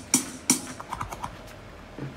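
A few sharp clicks in a quiet gap: two louder ones about a third of a second apart in the first half second, then several fainter ones.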